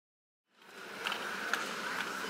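After silence, supermarket aisle ambience fades in about half a second in: a steady buzz with a few light clicks.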